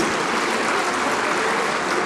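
A large indoor audience applauding steadily, a dense, even clatter of many hands clapping.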